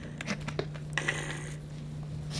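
Steady low electrical hum with a few faint clicks and a brief rustle about a second in.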